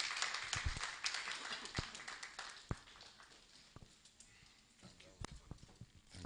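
Scattered audience clapping that thins out over the first two seconds, followed by a few sparse knocks and clicks.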